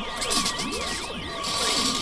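Cartoon sci-fi sound effect of telekinetic powers straining: a wavering electronic tone that wobbles about four times a second over a steady hum, with repeated swooping glides beneath.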